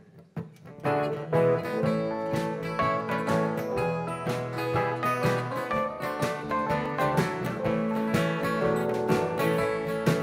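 Bluegrass band with strummed acoustic guitars, fiddle and drums playing the instrumental opening of a song. It comes in all together about a second in, after a few soft plucks.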